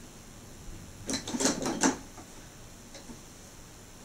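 Keys of an electronic keyboard clacking as they are pressed, with no notes sounding: the keyboard is switched off. A short run of clacks comes about a second in.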